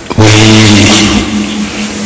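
Speech only: a speaker's microphone-amplified voice drawing out the word "We" for about a second, then a short pause.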